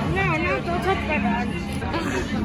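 Indistinct voices talking over a steady low hum of street traffic.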